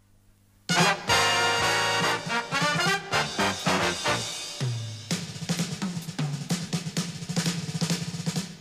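Jazz big band starting a number: after a brief silence the full band comes in together with a loud hit under a second in, horns over the drum kit. From about five seconds in the drum kit plays busy, regular strokes on snare and bass drum under sustained band chords.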